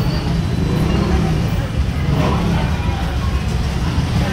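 Street traffic noise: a steady low rumble of road vehicles and engines, with indistinct voices in the background.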